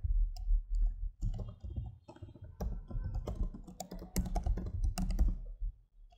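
Computer keyboard typing: a run of irregular key clicks as a short phrase is typed, busiest in the middle and latter part.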